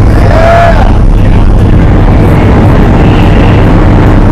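Propeller aircraft engine running loud and steady, heard from inside the cabin of a small plane on the runway. A short higher wavering tone sounds over it about half a second in.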